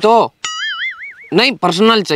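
A short cartoon-style 'boing' sound effect: one tone that wobbles up and down in pitch about four times over most of a second, starting suddenly, between bits of a man's speech.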